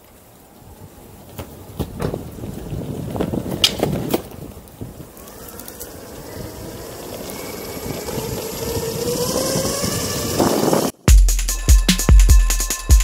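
Electric skateboard with dual Torqueboard 6355 brushless belt-drive motors setting off on pavement: wheels rolling with a few clacks over the first few seconds, then a motor whine rising in pitch as it speeds up, with wind building on the microphone. About a second before the end the board sound cuts off and music with a heavy drum-machine beat starts.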